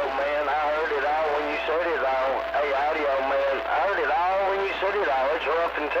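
A distant station's voice received over a CB radio, coming through the radio's speaker thin and band-limited, over a steady low hum. A faint steady whistle sits under the voice for about two seconds in the middle.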